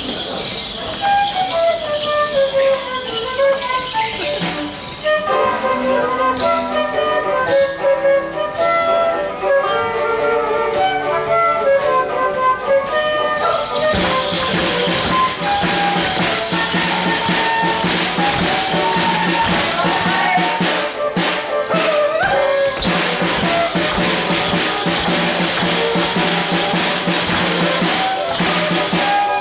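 Live folk dance tune played for morris garland dancers: a melody of quick notes over a percussive beat. About 14 seconds in the sound changes abruptly, and a steady low drone joins under the tune.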